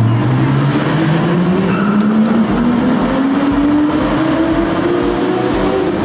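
Car engine accelerating hard through one long pull in a road tunnel, its pitch rising steadily without a gear change.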